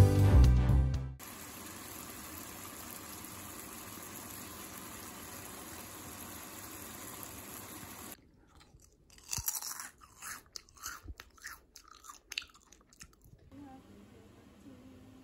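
Short irregular crackles and pops from food frying in an oiled pan, loudest about a second after they start. Before them, guitar background music stops about a second in and a steady hiss follows.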